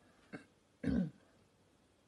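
A person clears their throat once, short and low, about a second in, after a faint click.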